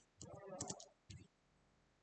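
Faint clicks of computer keyboard keys, a few scattered keystrokes as a terminal command is typed and entered.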